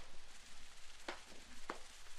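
Hand tamper striking concrete stamp mats laid on fresh concrete, pressing in an Ashlar slate pattern: two sharp knocks in the second half, about half a second apart.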